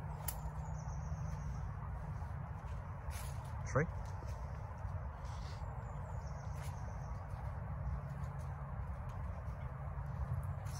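Steady low rumble of a handheld phone's microphone while its holder walks along a leaf-covered path, with a couple of faint high chirps about a second in and again around seven seconds.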